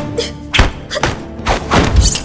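Punch and hit sound effects of a staged fight: four or five sharp blows in quick succession, the loudest about half a second in and at the end, over dramatic background music.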